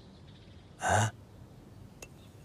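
A single short, breathy huff from a person about a second in, a nonverbal breath sound rather than words.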